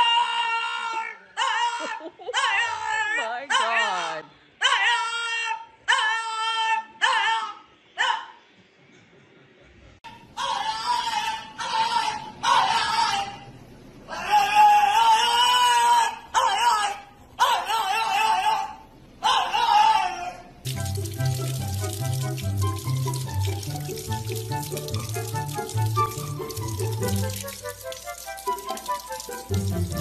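A dog howling in a run of about seven short, high calls, then a French bulldog giving several longer calls that waver in pitch. From about 21 seconds in, background music with a steady beat plays over running tap water.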